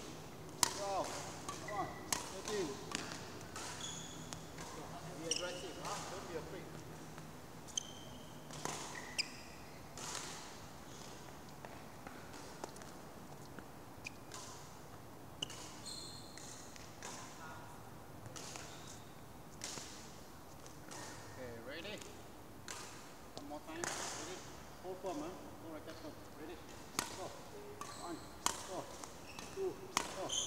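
Court shoes squeaking and feet landing on a badminton court in a large hall during a footwork drill: short high squeaks and scattered thuds come at an uneven pace.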